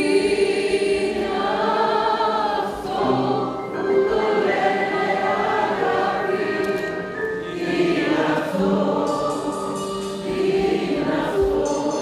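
A theatre audience singing a Greek popular song along with a live band, many voices together over the instrumental accompaniment.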